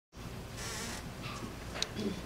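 Room noise ahead of a performance: a steady low hum, a brief rustle of hiss about half a second in, and a small click near the end.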